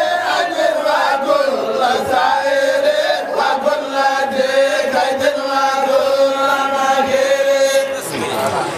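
Several voices chanting a zikr (Islamic devotional chant) together. The melody moves at first, then settles into long held notes about three seconds in.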